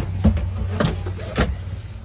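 Steady low hum in the cabin of a parked ATR 72-500, with four sharp knocks and clicks close by over two seconds, the last the loudest.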